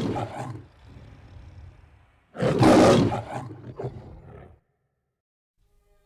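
MGM logo lion roaring: a roar tailing off, a low growl, then a second loud roar a little over two seconds in that fades away by about four and a half seconds.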